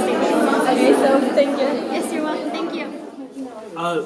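People talking over the chatter of a crowded hall, getting quieter about three seconds in.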